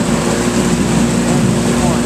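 Fishing boat's motor running steadily while the boat is under way: a constant engine hum over a steady rush of noise.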